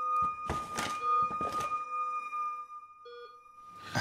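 A few short soft thuds and rustles, like an object being handled, over a steady high electronic tone that fades out, then a short electronic beep near the end.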